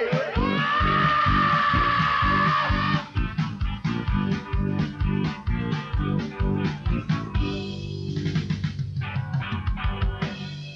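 Instrumental rock band passage with electric guitar, bass guitar and drums. A held high note sounds for about the first three seconds, then the band drops into a steady, driving beat of regular hits under the guitar and bass.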